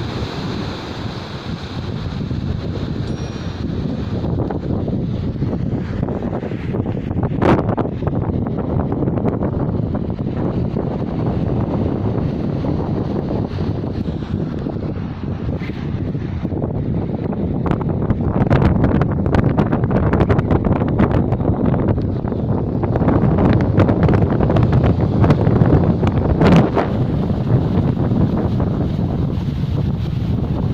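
Wind buffeting the phone's microphone over waves breaking on a rocky shore, gustier and louder in the second half. A couple of sharp clicks stand out, one about a quarter of the way in and one near the end.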